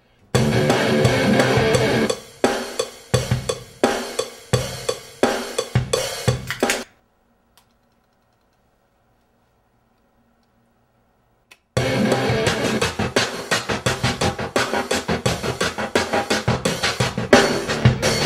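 Drum-heavy recorded music played back, with kick, snare, hi-hat and cymbals. It starts about a third of a second in and breaks off suddenly near the seven-second mark. After about five seconds of near silence it starts again and keeps going.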